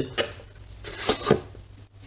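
Cardboard box being handled and moved by hand: a few quick knocks and scrapes, the loudest cluster about a second in.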